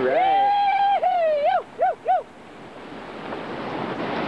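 A person's loud, high whoop, held for about a second and wavering downward, then two short 'hoo' calls, over the steady rush of whitewater rapids. The rapids' noise dips briefly after the calls before returning.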